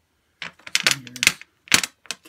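Metal swivel snap hooks clicking against a glass sheet as they are handled and set down: a few sharp clicks, the loudest one near the end.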